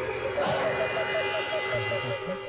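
A warbling, alarm-like tone that starts about half a second in and pulses about seven times a second, over a steady held tone, alongside a brief spoken word.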